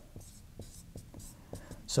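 Marker pen writing on a whiteboard: a series of faint, short strokes as figures are written out.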